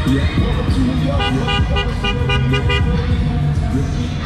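A car horn honked in a quick run of short beeps, about five a second, for a second and a half starting about a second in. Music plays underneath throughout.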